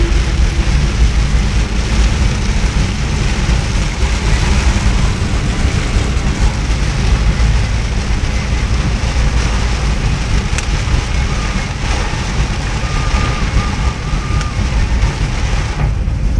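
Steady noise inside a car driving in heavy rain: tyres on the wet road and rain on the body and windscreen, with a deep low rumble.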